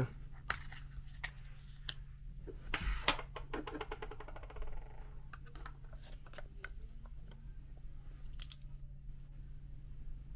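Small plastic clicks and handling noises as a battery is taken from its case and slid into a DJI Osmo Action camera, with a cluster of clicks about three seconds in, over a steady low hum.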